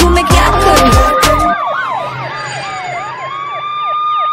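A siren sound effect in a song's outro. A drum beat plays under a wailing siren tone, then the beat stops about one and a half seconds in and the siren goes on alone, its slow rise and fall overlaid with quick repeated up-and-down yelps.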